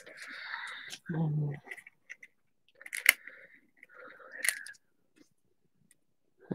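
Paper cutout being handled and lifted off a canvas: rustling, with a couple of sharp clicks and taps. A brief low vocal sound comes about a second in.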